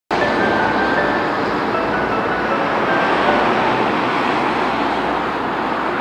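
Steady outdoor background noise, a wide even hiss and rumble, with scattered short high whistled notes over it.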